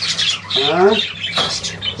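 A room of budgerigars chattering and screeching continuously, with one sharper call about a second and a half in.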